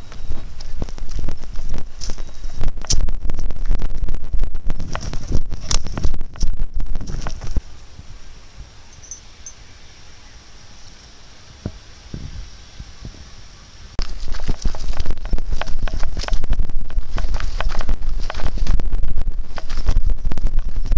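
Rumbling, crackling handling noise on a handheld camera's microphone, with footsteps on a gravel path, carried at a brisk walk. It drops to a quieter rustle for several seconds in the middle, then comes back just as loud.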